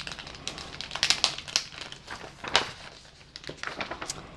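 Plastic packaging crinkling and rustling in irregular short bursts as a wrapped item is handled and unwrapped, mixed with paper pages being handled.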